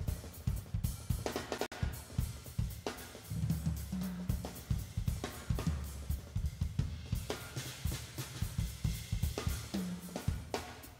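Drum kit played live in a busy groove: rapid snare, hi-hat, cymbal and kick-drum strikes, with low held electric bass notes underneath a few times.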